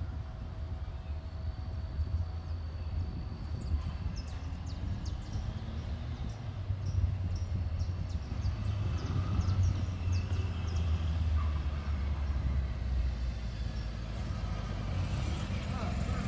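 Steady low outdoor rumble of traffic and wind, with a few short high chirps in the middle. Near the end a motorcycle engine grows louder as the bike approaches.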